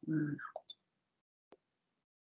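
A brief spoken phrase, then a single sharp click about a second and a half in: a computer mouse click.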